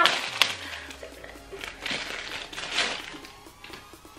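Clear plastic bag crinkling in three short rustles as it is pulled open and a foam squishy toy is taken out, with quiet background music.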